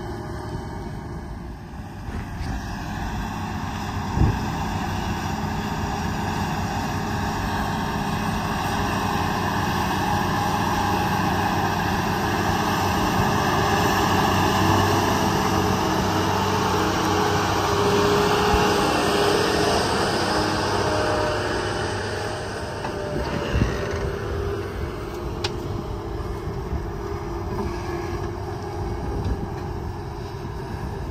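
Case IH 620 Quadtrac's diesel engine working under load as it pulls a scraper through dirt, getting louder as it passes close and easing off after. A few sharp knocks stand out over the engine.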